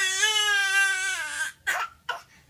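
Baby crying: one long, high wail that sinks in pitch and breaks off about one and a half seconds in, then a quick noisy breath.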